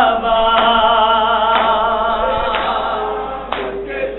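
Noha (Shia mourning lament) chanted by a male reciter in long, wavering held notes. Mourners' matam, hands beating on chests, keeps a steady beat of about one stroke a second.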